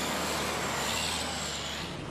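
Fire engine passing close by: a loud, steady rushing hiss with a thin high whistle on top and a low engine hum beneath.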